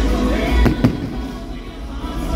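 Aerial firework shells bursting, with two sharp bangs close together a little under a second in, over music playing throughout.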